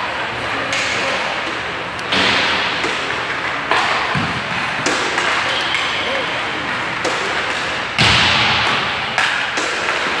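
Ice hockey practice in an indoor arena: about half a dozen sharp hits of pucks off sticks and boards, the loudest about eight seconds in, over a steady wash of skates on ice and distant voices.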